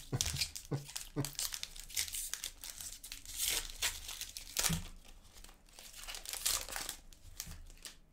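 Plastic wrapper of a hockey trading card pack crinkling and tearing as it is ripped open by hand. The crackling comes in irregular spurts and is loudest twice, around the middle and again later.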